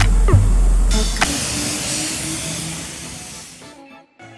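Background music: sliding notes over heavy bass, then a bright hiss that fades over about two and a half seconds and cuts off just before the end.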